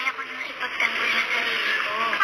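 Spoken dialogue in a TV drama over background music.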